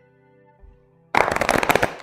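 Tarot cards being shuffled: a loud, fast run of clicking card flutter starting a little past halfway and lasting under a second, over soft background music.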